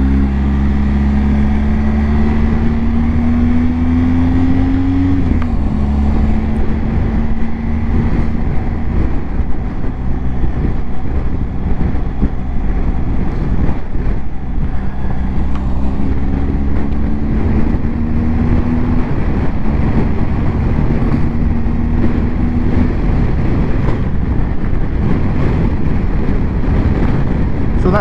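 BMW R1250 GS Rallye TE's boxer twin engine pulling hard with heavy wind rush over the helmet-mounted microphone. Its note climbs for about five seconds, drops suddenly at an upshift, then holds steady under the wind, climbing once more midway.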